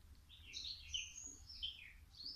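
Birds singing and chirping: a run of short, high chirps and warbled phrases that starts about a third of a second in and goes on to the end.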